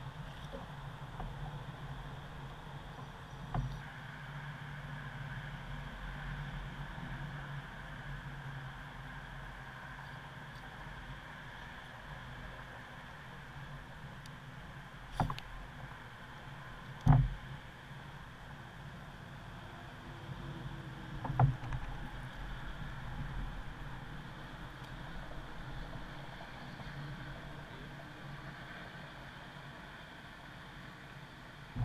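Kayak on the water: a steady low hum and faint water noise, broken by four sharp knocks on the hull or gear, two of them close together around the middle, the second of those the loudest.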